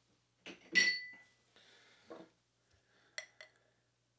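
Glassware clinking: one sharp glass clink that rings briefly about a second in, then two light clinks in quick succession near the end, as an empty drinking glass is taken from a rack of glasses and brought to the beer bottle for pouring.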